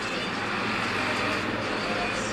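Steady background noise of street traffic.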